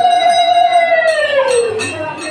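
A conch shell blown in one long steady note that bends down in pitch and dies away about a second and a half in.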